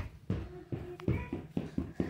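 A quick run of light knocks or taps on a hard surface, about five a second, made as pretend footsteps.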